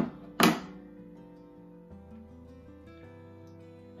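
A pair of metal scissors set down on a wooden tabletop: two sharp clacks close together at the start, the second and louder about half a second in. Soft acoustic-guitar background music plays throughout.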